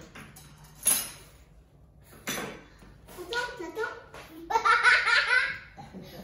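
A small child blowing short puffs of air at birthday candles, twice in the first few seconds, then laughter and giggling, loudest near the end.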